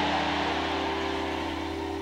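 A church keyboard holding a sustained chord that slowly fades, over the noise of a congregation.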